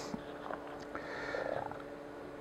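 Faint handling of nylon cable ties being fed through holes in a seat cover's flap, with a few light ticks and a brief faint rising sound about one and a half seconds in, over a steady low hum.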